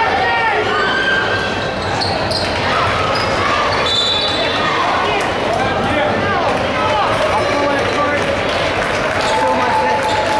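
Basketball bouncing on a hardwood gym floor at the free-throw line, amid steady crowd chatter and voices in the gym.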